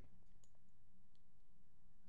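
A pause in talk: a low steady hum with two faint short clicks, one about half a second in and one just past a second.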